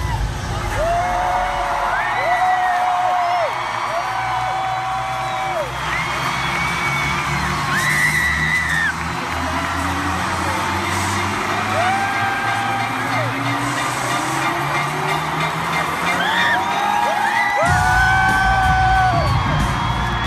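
Arena pop concert with fans screaming and whooping in long held cries over the show's electronic intro music. A low synth tone rises slowly through the middle, then a heavy bass beat kicks in near the end.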